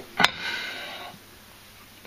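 A single sharp click about a quarter second in, followed by a faint hiss that fades within a second, then quiet room tone.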